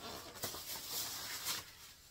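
Plastic grocery bag rustling and crinkling, with a few sharper crackles, as a boxed item is pulled out of it.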